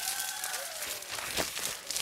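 Black plastic trash bag rustling and crinkling as it is handled over a person's head and shoulders, with a louder crackle about two-thirds of the way through.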